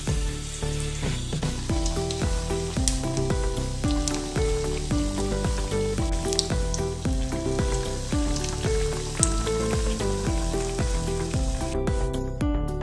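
Bread-coated chicken patty deep-frying in hot oil, sizzling with scattered crackles, under instrumental background music with a quick run of notes.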